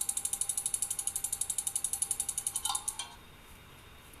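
Clicking ticks of an online random name-picker wheel spinning: a rapid, even stream of clicks that stops about three seconds in as the wheel lands on a name.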